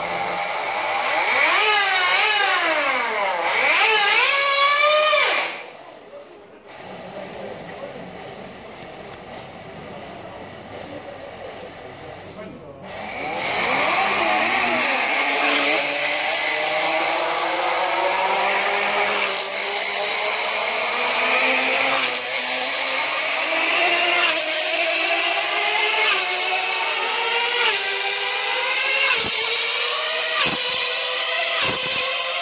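Tiny 1.5 cc two-stroke model engine of a Class 1 tethered racing car, running at a high-pitched scream. Its pitch wavers for the first few seconds, drops away quieter for several seconds, then about thirteen seconds in comes back loud and climbs steadily as the car speeds up around the circle.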